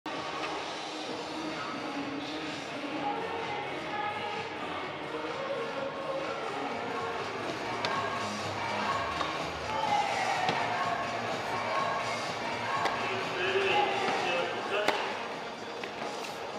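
Indoor arena ambience of crowd chatter with background music, broken by a few sharp tennis ball bounces.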